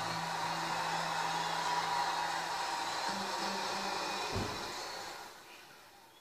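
Steady rushing noise from a television's speaker, with a low hum through the first half and a brief low thump about four and a half seconds in, fading away near the end.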